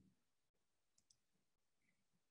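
Near silence: faint room tone over a microphone, with a couple of faint clicks about a second in.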